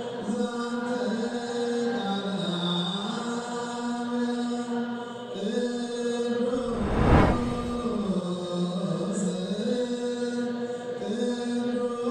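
A single voice chanting the Ethiopian Orthodox mesbak (a psalm verse) in long held notes that slide slowly between pitches. A brief deep swelling hit sounds about seven seconds in.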